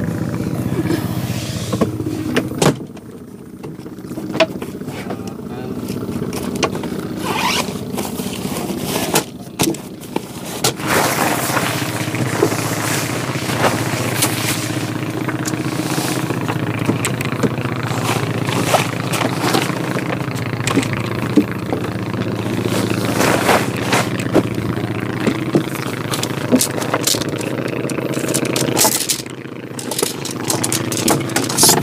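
A small engine running steadily, with the rustle and clatter of a tent groundsheet and tent poles being handled over it.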